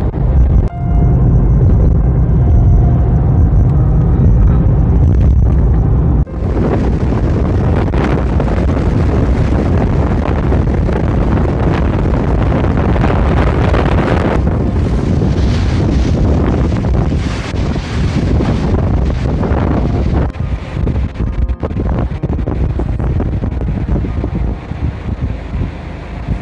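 Road and engine noise heard from inside a moving car for about the first six seconds. Then, after a sudden cut, wind buffets the smartphone microphone outdoors, gusting with brief dips in the last few seconds.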